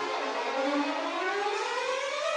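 Ensemble of violins playing a long upward glissando together, the pitch sliding steadily higher.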